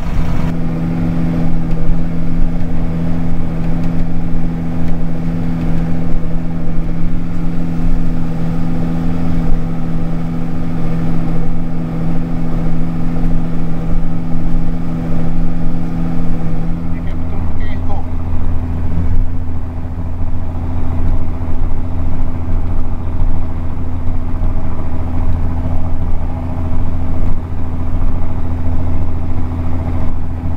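John Deere 4755 tractor's diesel engine running steadily under load while pulling a five-furrow reversible plough, heard from inside the cab. A little over halfway through, the engine note changes: the higher drone gives way to a deeper, lower one.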